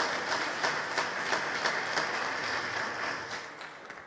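Audience applauding: many people clapping together, dying away near the end.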